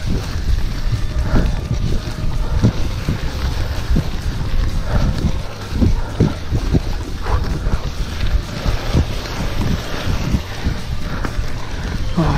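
Wind buffeting an action camera's microphone, with low rumble and irregular knocks and rattles from a mountain bike climbing a leaf-covered dirt track.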